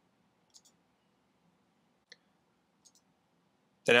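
Three faint, separate computer mouse clicks a second or so apart over quiet room tone.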